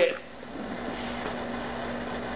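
The end of a spoken word, then a steady background hum with a faint low steady tone in it.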